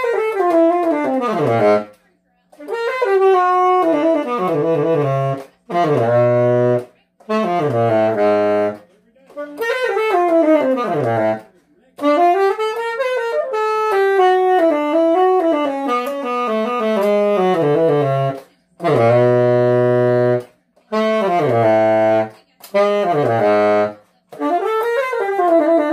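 1982 Selmer Mark VI tenor saxophone played solo, softly and low, in short phrases with brief pauses between them. Several phrases end in a downward pitch bend.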